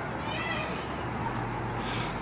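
A short high-pitched vocal cry of about half a second, rising and falling, heard over a steady background hiss.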